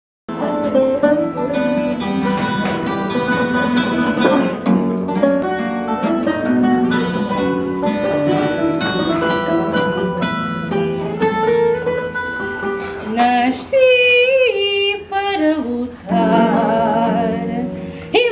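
Fado accompaniment on Portuguese guitar and viola de fado (acoustic guitar), plucked notes filling an instrumental introduction. About thirteen seconds in, a woman's voice comes in singing fado with a wavering vibrato over the guitars.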